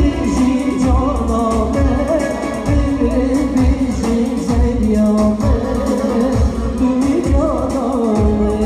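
Live Kurdish music: a male singer into a microphone, backed by keyboard, over a steady low drum beat.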